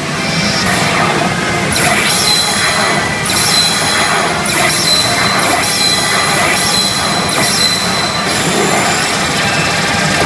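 A pachinko machine's electronic effects and music over the dense, steady din of a pachinko parlour, during a roulette bonus round that lands on its 'Music Rush' mode. Bright high effect layers switch on and off every second or so.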